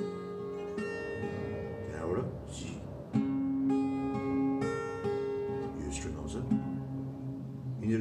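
Twelve-string acoustic guitar, capoed at the sixth fret, fingerpicking single notes that ring on over one another in an arpeggiated pattern, with a louder new group of notes about three seconds in. Short scratchy noises come near two and six seconds.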